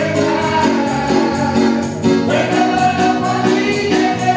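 Gospel choir singing with microphones through a PA system, with a tambourine shaken in a steady beat.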